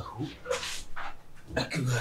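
A man groaning and sighing in distress: a short low groan, a long breathy exhale about half a second in, then another low groan near the end.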